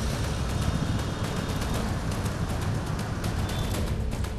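Background music bed of a TV news report, a dense, steady, bass-heavy texture with no voice over it.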